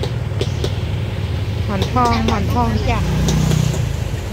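A steady low mechanical rumble throughout, with a voice calling out "Monthong, Monthong" from about two seconds in.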